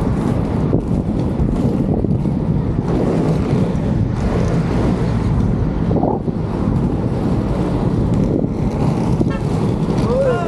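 Steady wind rushing over the microphone while skating fast, mixed with the low rumble of inline skate wheels rolling on asphalt.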